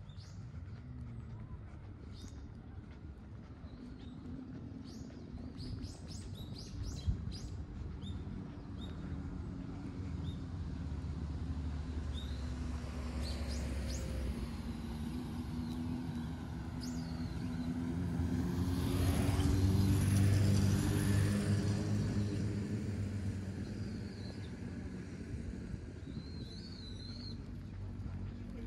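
Small birds chirping in short high calls, then a motor vehicle on the road slowly approaching and passing, its engine hum and tyre noise building to a peak about two-thirds of the way through and fading away.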